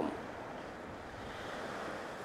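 Steady, even rush of wind, with no distinct events.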